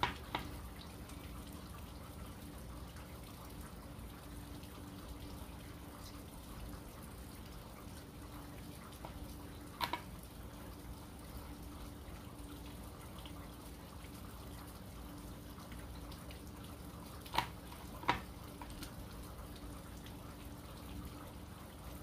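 Steady rain falling, a recording used as background sound, with a few faint clicks: one about ten seconds in and two close together about three-quarters of the way through.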